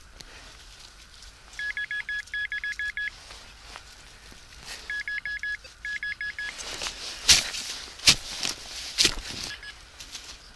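Metal-detecting pinpointer beeping in quick steady-pitched pulses, in a burst about two seconds in and again around five to six seconds, as it is probed into the hole and finds the buried target off to one side. Near the end come several sharp knocks of a shovel digging.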